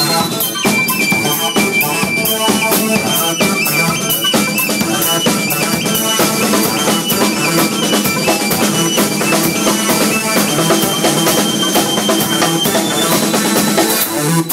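Live synthesizer-and-drums music: a high synth lead steps through short repeated notes over a drum kit played with a fast, steady beat.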